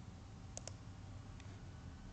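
Computer mouse clicking: a quick double click about half a second in, then a fainter single click, over a low steady room hum.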